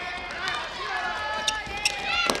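Players' high-pitched shouts and calls echoing in an indoor futsal arena, with running on the wooden court and two sharp short knocks or shoe squeaks in the second half.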